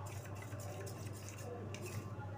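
Metal spoon stirring custard powder into milk in a small steel bowl, with faint, irregular scraping and clinking against the bowl, over a steady low hum.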